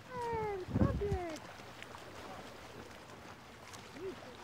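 A young child's voice making two wordless calls that fall in pitch, with a brief low rumble between them about a second in.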